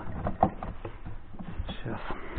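Light plastic clicks and knocks, with one sharper knock about half a second in, as a refrigerator's plastic thermostat cover is pushed into place inside the fridge compartment.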